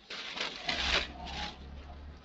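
Crumpled tissue paper and cardboard packing rustling and scraping as hands dig into a small box. The sound comes in a few rough bursts and fades out after about a second and a half.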